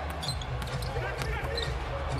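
A basketball being dribbled on a hardwood arena court during live play, over a low steady hum of arena background noise.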